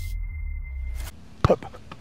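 Electronic logo sting: a deep bass rumble under a steady high tone, which cuts off about a second in. Near the end come a sharp click and a brief bit of voice.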